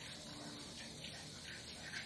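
Faint sound of water falling and trickling down from a flat concrete roof slab to the ground below, as the water on the slab drains off.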